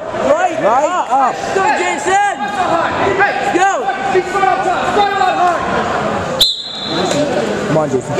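Rapid, overlapping squeaks of rubber-soled shoes on a gym floor and mat, over background voices in a large echoing gym. A single sharp click about six and a half seconds in.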